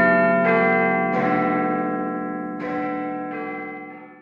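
Pendulum wall clock chiming: a slow run of bell notes at changing pitches, each ringing on into the next, fading away near the end.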